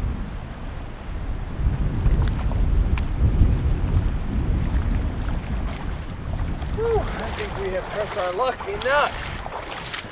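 Wind buffeting the microphone beside a flowing river, a low rumble that is strongest in the first half. A voice is heard briefly near the end.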